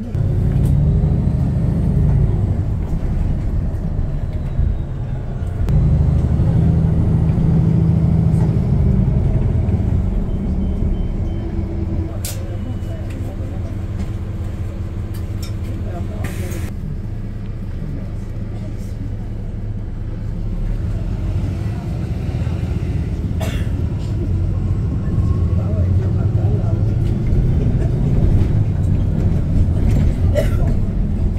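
Steady low rumble of a moving bus heard from inside the cabin, the engine and road noise swelling and easing with traffic, with a few sharp clicks.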